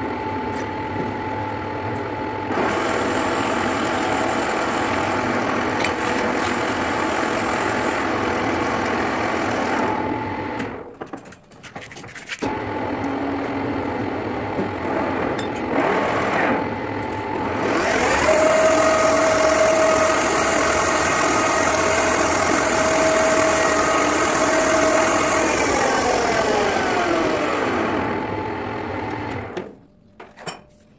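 Metal lathe running with its spindle turning a steel part, a steady machine hum with a brief dip a little before the middle. A whine rises about halfway through, holds, then glides down near the end as the spindle slows to a stop.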